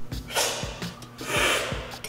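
Loud air-drawn slurps of brewed coffee sucked off a cupping spoon to spray it across the mouth, done twice in quick succession as part of coffee cupping.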